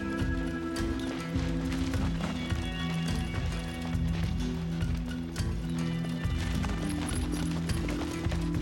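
Tense film score: sustained low notes over a quick, pounding galloping rhythm.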